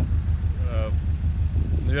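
Subaru Forester's turbocharged flat-four engine idling with a steady low throb.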